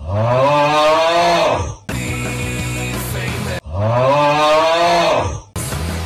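A deep, drawn-out "uggggh" groan edited over a rock theme song, heard twice, each about two seconds long, its pitch rising then sinking. The song's guitar music plays in the gap between the two groans and again after the second.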